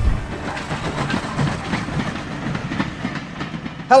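A railway train running on the track, a steady rushing noise with irregular wheel clatter, played over the title sequence.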